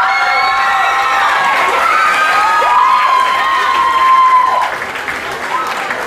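An audience cheering and applauding, with many high-pitched shouts held over the clapping. It dies down after about four and a half seconds.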